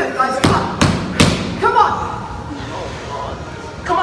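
Three heavy thuds on a rubber gym floor in quick succession, roughly 0.4 s apart, starting about half a second in.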